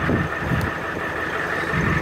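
Diesel truck engine idling steadily: a low, even hum with a faint steady high whine over it.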